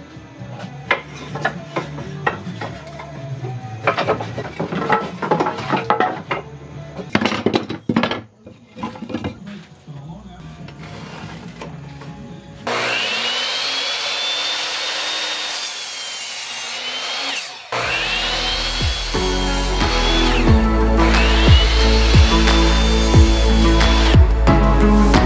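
A 10-inch compound miter saw cutting wood in three stretches over the second half, each with a high whine that rises and then sags before it stops. Background music plays throughout, and the first half holds scattered knocks of scrap wood being handled.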